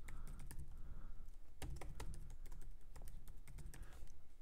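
Computer keyboard keys clicking in quick, irregular keystrokes as a password is typed in twice.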